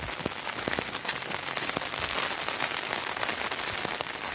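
Steady rain falling, an even hiss with scattered sharper ticks.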